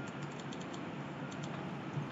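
Faint, irregular clicks of a computer keyboard being typed on, over a steady low hum.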